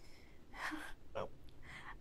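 A crying woman's quiet, tearful breathing: a gasping in-breath about half a second in, then a softly spoken "no".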